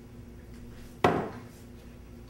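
A glass measuring cup set down on a kitchen countertop: one sharp clunk about a second in, ringing briefly.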